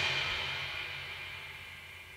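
The last chord of a hard rock band, distorted electric guitar with bass and cymbal, ringing out and fading away steadily to near quiet.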